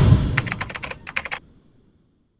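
Logo-animation sound effect: a low boom that dies away, followed by a quick run of about a dozen sharp clicks that stop about a second and a half in.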